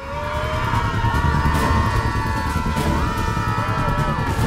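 Dramatic film soundtrack: an orchestral score of held chords over a heavy low rumble of a speeding car's engine and tyres.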